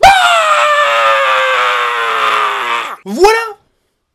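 A man's long, loud shout of joy, held for about three seconds with its pitch slowly falling, followed by a short second yell.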